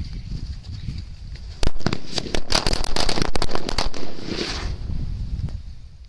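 A packet of Murga Chhap bijli crackers (small paper-wrapped Indian firecrackers) going off: the fuse sparks first, then about one and a half seconds in comes a rapid run of many sharp bangs lasting two to three seconds, ending in a fading fizz.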